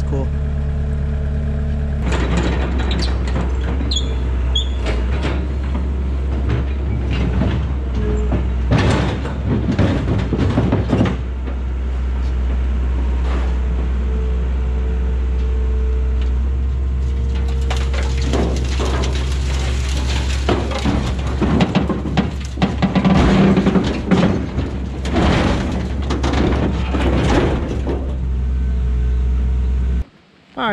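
A machine's engine running steadily, overlaid with repeated clanks, bangs and scraping of steel as an excavator handles a scrap dump body over a steel trailer. The metal knocks come in clusters and are busiest in the second half.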